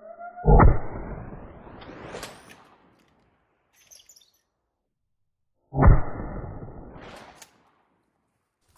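Two shots from a 12-gauge Remington 870 Tac-14 pump-action shotgun, about five seconds apart, the first about half a second in. Each shot is followed by a rising whoosh.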